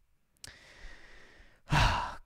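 A man breathing in through the mouth, a faint airy hiss lasting about a second, then a short, much louder breath out near the end: a sigh before he speaks again.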